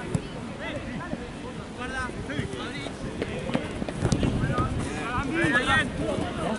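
Football players shouting and calling to each other during play, with wind rumbling on the microphone. A single sharp knock sounds just after the start, and the calls grow louder in the last second or two.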